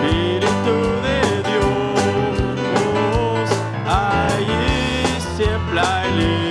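Live church worship music: a band with a steady drum beat and bass behind a lead singer and congregation singing a Spanish-language praise song.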